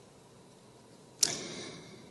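A quiet pause, then about a second in a short, sudden rustle of paper sheets handled close to the podium microphone, fading within half a second.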